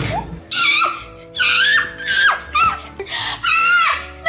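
A child shrieking and squealing with ticklish laughter in a series of high bursts while dogs lick his bare feet, over background music.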